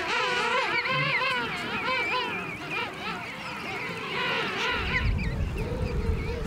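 A crowd of king penguin chicks and adults calling at once: a steady chorus of many overlapping, wavering calls. A low rumble joins in during the last second or so.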